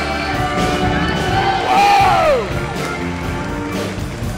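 Band music with keyboard, drums and bass guitar playing the show's opening theme, with a loud whoop that falls in pitch about two seconds in.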